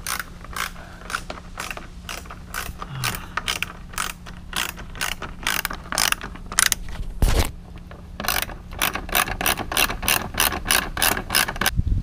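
Hand ratchet clicking in quick, even strokes, about three clicks a second, as a bolt and nut holding the front lip to the bumper are tightened. There is a brief pause with a dull knock about seven seconds in, and another knock near the end.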